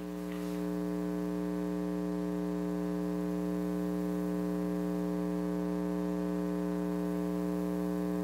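Steady electrical mains hum and buzz in the sound system, a low buzz that swells slightly in the first second and then holds unchanged.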